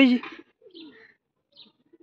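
Domestic pigeons cooing softly, with one low falling coo about half a second in, just after a man's brief spoken word.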